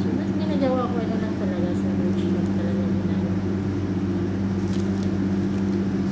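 A steady, low mechanical hum runs throughout, with faint voices in the background. A short paper rustle comes near the end.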